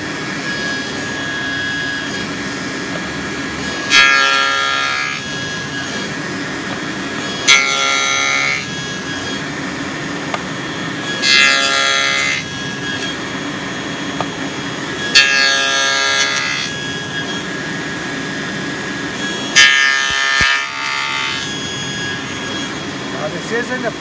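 SawStop table saw with a dado stack running steadily while it cuts finger-joint slots in the end of a wooden board held in a jig. There are five cuts, each lasting about a second and rising to a louder, pitched cutting sound, spaced roughly four seconds apart.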